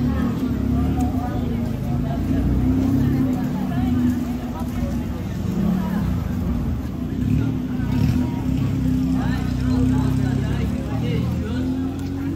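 Busy street ambience: a steady low machine hum, like a running engine, under the scattered chatter of passers-by.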